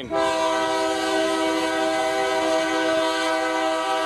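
Horn of an approaching Union Pacific diesel locomotive sounding one long, steady blast, a chord of several notes held evenly throughout.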